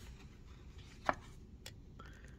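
A playing card laid down on a tabletop: one sharp tap about a second in, then a fainter click about half a second later.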